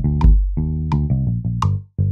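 GarageBand playback of a looped bass line at 85 beats per minute, with a Classic Drum Machine kit hit on each beat: three evenly spaced hits. The sound cuts out briefly near the end as a new drum kit loads.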